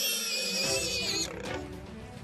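A high-pitched, wavering animal squeal with overtones during an African wild dog pack's attack on prey. It cuts off abruptly about a second in, leaving quieter scattered clicks.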